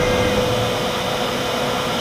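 CNC router spindle and dust collector running together: a steady loud rushing noise with a steady whine through it, as the router finishes its V-carve cleanup pass.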